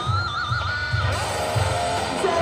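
Electric guitar playing a high held lead note with bends and vibrato for about a second, over a steady drum beat.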